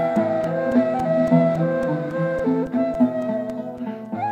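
Turkish classical instrumental music: a saz semaisi in makam buselik. A plucked oud carries the melody over a steady drum beat of about four strokes a second.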